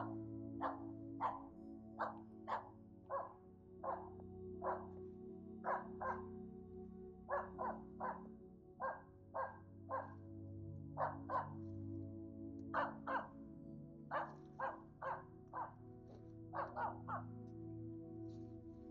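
Finnish Spitz barking in a steady run of short, sharp barks, often in quick pairs, the bark-pointing it uses to hold game up in a tree while the hunter sneaks closer. Background music plays steadily underneath.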